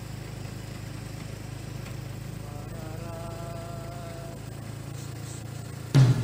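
Steady low buzzing hum of a vehicle's engine, heard from inside while driving along a city street. A faint held tone sounds for about a second and a half in the middle.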